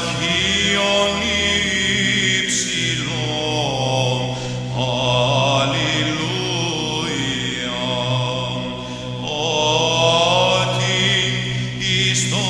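Greek Orthodox Byzantine chant: voices singing a slow melody over a steady, low held drone (the ison).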